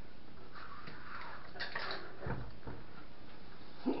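Hands fitting parts onto a 3D printer's frame: faint scattered rustling and small clicks, with a low thump a little over two seconds in, over a steady background hiss.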